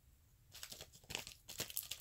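Crinkling and tearing of a small wrapper handled in the fingers: a run of irregular crackles starting about half a second in.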